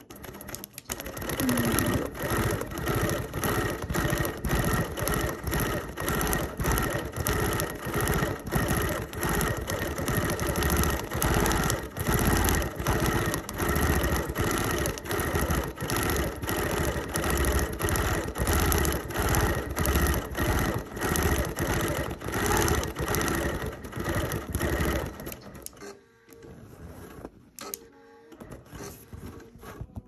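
Quilting machine stitching through the layers of a quilt: a fast, even run of needle strokes that starts about a second in and stops near the end.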